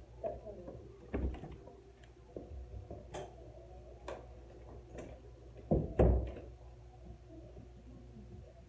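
Light footsteps and small knocks, then an interior door pulled shut about six seconds in: two loud thuds in quick succession as it closes and latches.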